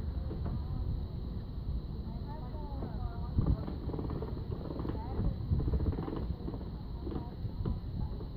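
Busy sidewalk sound: indistinct voices of people talking close by over a steady low rumble, with a few sharp clicks.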